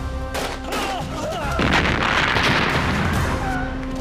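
Battle sound effects of gunfire: sharp shots in the first second, then a heavier, louder burst of noise about a second and a half in that lasts nearly two seconds, over dramatic background music.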